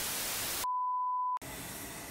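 TV-static transition sound effect: about half a second of loud static hiss, then a steady single-pitched beep lasting under a second that cuts off suddenly.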